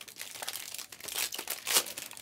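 Foil wrapper of a Panini Prizm Choice basketball card pack crinkling as hands open it. The crackling rustle is uneven, with its loudest bursts about a second in and again near the end.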